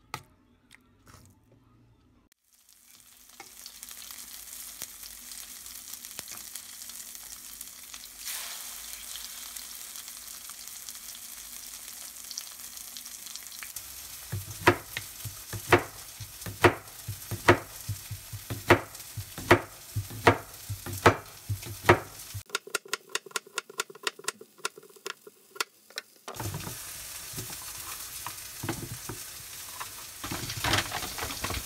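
A steady sizzling hiss for about ten seconds. Then a knife slices through an aehobak (Korean zucchini) onto a cutting board, a sharp knock for each slice about once a second, followed by a run of faster, lighter taps.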